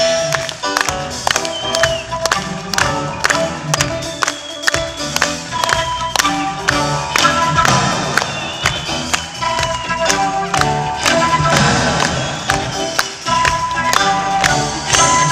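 Live rock band playing an instrumental passage, a transverse flute leading with held and running notes over drums and keyboards.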